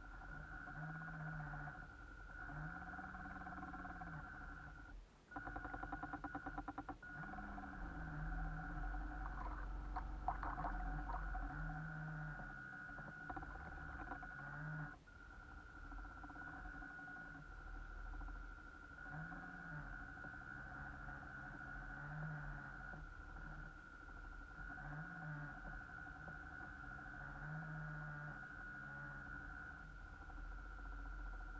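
Small electric motor of a radio-controlled boat running, with a steady whine over a lower hum that rises and falls in pitch again and again as the throttle is eased on and off. A brief fast ticking comes about five seconds in.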